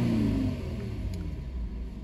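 2009 Infiniti FX35's 3.5-litre V6 engine coming down from a rev as the throttle is released, its pitch falling over about the first half second, then settling into a steady, quieter idle. It is heard from inside the cabin.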